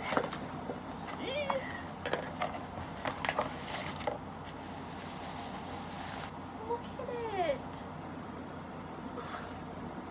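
Bubble wrap crinkling and rustling as a mug is unwrapped from it, with scattered knocks and scrapes of the cardboard box being handled. A few short wordless vocal sounds, a hum and a sigh of effort, come through about a second in and again near seven seconds.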